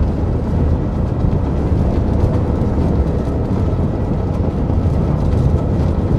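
A steady, loud, deep rumble that holds at one level without breaks, strokes or changes in pitch.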